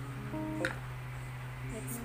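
Background music led by plucked guitar, with held notes. A wooden spatula knocks once against a ceramic mixing bowl a little over half a second in.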